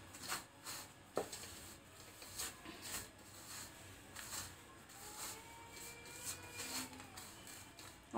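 A hand mixing dry, crumbly karanji filling in a stainless-steel bowl, giving faint rustling and light scraping of the flakes against the steel, with a small tick about a second in.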